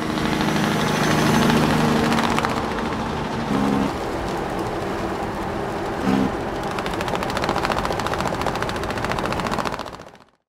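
Farm tractor engine running steadily, with two short louder bumps and then a fast, even clatter in the last few seconds.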